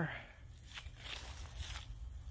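Faint rustling with a couple of soft crunches, like steps on leaf litter, over a low steady rumble.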